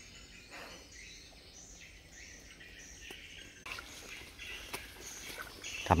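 Faint bird chirps and insect calls in woodland, with a soft rustle of brushed leaves and undergrowth from a bit past halfway.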